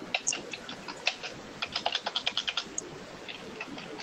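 Typing on a computer keyboard: an irregular run of quick, light key clicks, quiet next to the speech around it.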